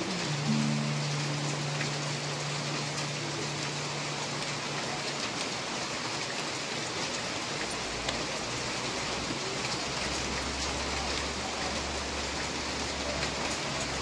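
Steady rain falling, an even hiss that holds throughout. A low sustained tone sounds under it for the first few seconds, and a deeper hum joins from about eight seconds in until shortly before the end.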